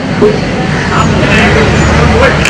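Steady low background rumble with short, scattered voices calling in the distance.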